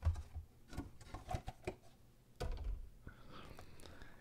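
A clear plastic protector case being handled as a carded Hot Wheels car is slid out of it: scattered faint plastic clicks and taps.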